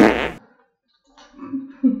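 A loud, short rasping burst of noise at the very start, lasting under half a second, then a brief hush and a short woman's laugh near the end.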